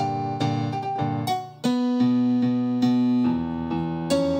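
Electric piano sound from a stage keyboard playing improvised chords. The sound falls away briefly about one and a half seconds in, then a new chord with a strong low note is held and shifts once more near the end.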